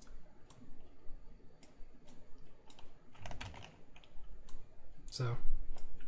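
Computer keyboard keys clicking at irregular intervals, a few at a time, with a short cluster just past three seconds in.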